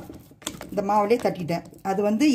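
A woman talking for most of the stretch. Near the start, in a short pause, there are a few soft clicks and taps as a buttered hand presses and smooths dough in a plastic bowl.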